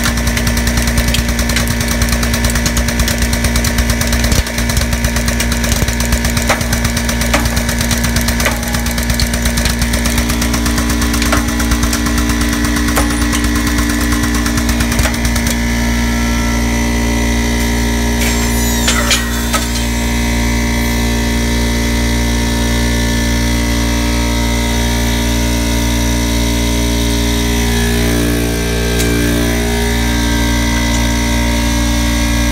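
Air compressor running steadily with a low hum while a crusher's punch is forced through a desktop hard drive. The drive's metal casing crackles and snaps with many small clicks for about the first half, then the machine sound goes on evenly.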